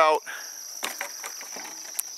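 Insects chirring steadily in a high, even pitch, with a single sharp click near the end.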